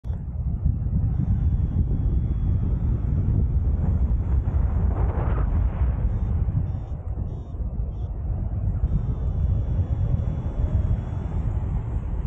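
Airflow rushing over the microphone of a harness-mounted camera on a paraglider in flight: steady low wind rumble on the mic, with a brief brighter rush of hiss about five seconds in.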